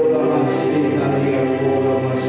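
A man singing a slow worship song to his own Yamaha electronic keyboard accompaniment, with steady held chords under the voice.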